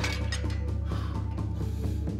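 Metallic clicks and rattles of a barbell and weight bench during a bench press, over a steady low music drone.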